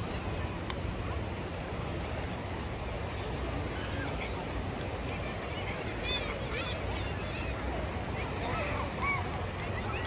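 Outdoor beach ambience: steady wind noise on the microphone with a low rumble of surroundings, and faint distant calls from about six seconds in.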